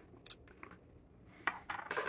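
Small handling sounds from an ink bottle's cap being unscrewed and set down on a desk: a few sharp clicks about a quarter second in, then a short scraping clatter near the end.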